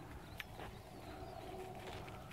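Horse walking on soft arena dirt, its hoofbeats faint and dull. A faint bird call is held for about a second in the middle.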